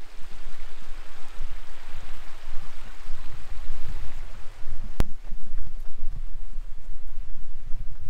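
A small river flowing in a steady rush, with wind buffeting the microphone in low gusts. A single sharp click comes about five seconds in.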